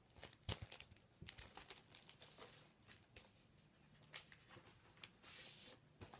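Faint handling of an LP record jacket and its paper inner sleeve: a few light clicks, then two soft swishing rustles as the sleeve slides out of the cardboard jacket.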